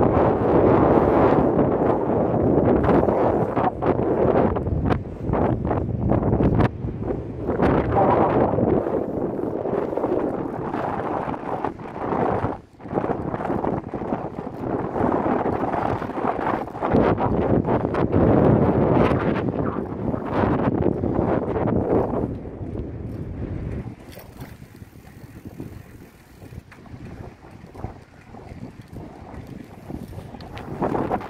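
Wind buffeting the microphone in uneven gusts, a loud rushing rumble that eases to a lower level about six seconds before the end.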